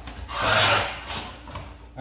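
Hand saw cutting shoe molding in a miter box: one long rasping stroke about half a second in, then a shorter one.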